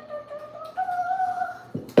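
A voice humming a held note, stepping up to a higher note a little under a second in and stopping shortly before the end. Near the end comes a sharp, loud knock.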